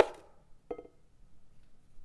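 A spoon clicking against a dish as crushed Oreo cookie crumbs are scooped and sprinkled: a sharp click right at the start and a lighter one with a brief ring under a second in, otherwise quiet.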